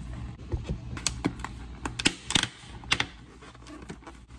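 Clear plastic cake container being handled: irregular sharp clicks and knocks of the plastic, the loudest about two seconds in, over a low steady hum.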